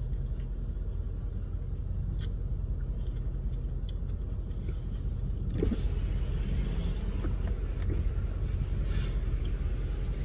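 Steady low rumble in a parked car's cabin, with faint chewing of a crisp, watery fruit. The noise grows a little louder and fuller after about five and a half seconds.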